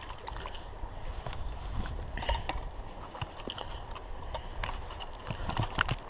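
A low steady rumble with scattered light clicks and faint water sounds while a hooked mirror carp is played on a spinning rod and reel.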